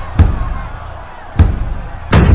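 Two heavy, echoing thuds, the first just after the start and the second about a second later, each dying away in a reverberant tail.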